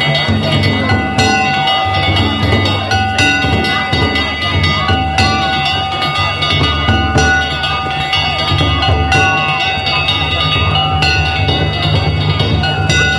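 Danjiri festival float music: drums and clanging hand gongs played on the float, with strong strikes about every two seconds and held high notes over them. A crowd's voices run underneath.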